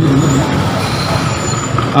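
Road traffic noise: a heavy vehicle going by, its engine giving a steady rushing noise.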